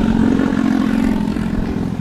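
A motor running steadily with a low, even drone.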